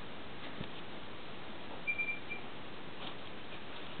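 Steady background hiss with a brief, thin high-pitched chirp about two seconds in: one short note, then a shorter one just after.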